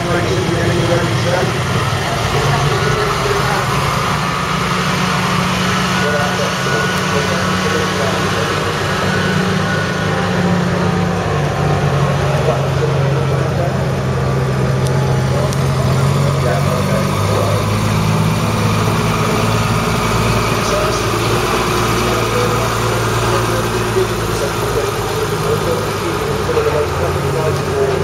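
Slow-running engines of heavy military trucks on the move: the 18-litre V8 diesel of a Thornycroft Mk3 Antar tank transporter, then a Scammell Explorer, the engine note dropping in pitch about two-thirds of the way through. Voices of people chatter throughout.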